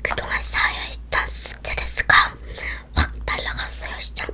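A girl talking softly, close to a whisper, into close microphones, with a few sharp mouth clicks between the words.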